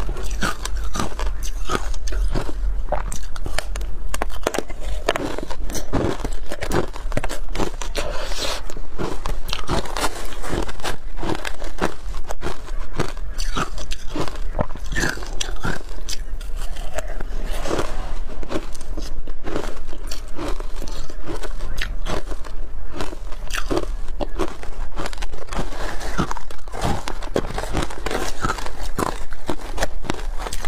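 Close-miked biting and chewing of frozen ice coated in matcha and milk powder: a dense, continuous run of crisp crunches.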